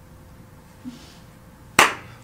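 Quiet room tone, then a single sharp hand clap near the end.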